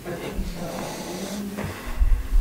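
A person's voice making one drawn-out low hum, steady in pitch, lasting about a second and a half.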